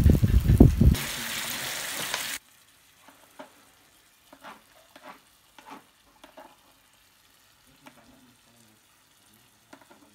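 Sizzling of grilling pork, with a loud low rumble in the first second, then a steady hiss that cuts off suddenly about two and a half seconds in. After that, near silence with a few faint soft clicks.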